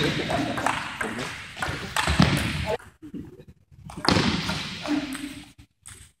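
Table tennis ball clicking off paddles and the table during a rally. Voices ring out twice, echoing in a large hall.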